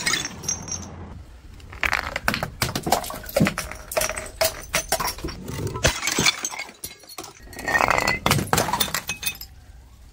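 Liquid-filled glass bottles smashing on stone steps, with the drink splashing out. There are several separate smashes, each a sharp crash of breaking glass followed by the tinkle of shards.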